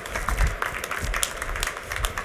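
Scattered applause: hands clapping irregularly.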